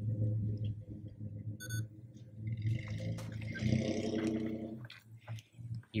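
A short, high electronic beep from a handheld camcorder as it is switched off, heard once a little under two seconds in over a steady low hum.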